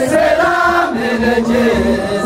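Group of voices chanting an Ethiopian/Eritrean Orthodox hymn (mezmur) in unison, with the low, regular beats of kebero hand drums underneath.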